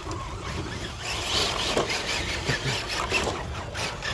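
Several electric RC rock crawlers driving over rocks and logs in leaf litter, their motors running, with a few small knocks and a steady low rumble underneath.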